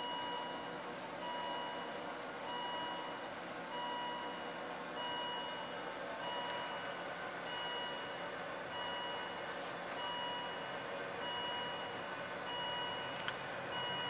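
An electronic beeper sounding steadily, one flat beep about every 1.2 seconds, over a steady background of noise.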